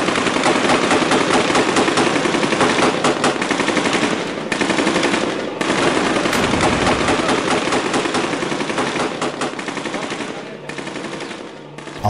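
Sustained gunfire in a firefight: rapid, overlapping shots that run almost without pause, with brief lulls about four and a half and five and a half seconds in, and growing quieter over the last two seconds.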